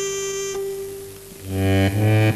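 Piano accordion playing solo. A held reedy note ends about half a second in and the sound dies down, then loud low notes come in about three-quarters of the way through, moving in quick steps.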